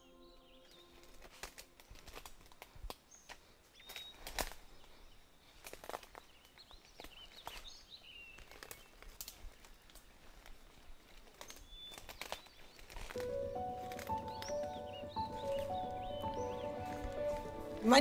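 Faint footsteps and twig snaps on a leaf-littered forest floor, irregular sharp clicks, with a few bird chirps. About thirteen seconds in, soft music of held chords comes in over them.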